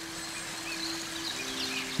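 Soft background bed under a spoken meditation: a steady held synth tone that shifts to a two-note chord partway through, over a faint hiss with a few faint high chirps.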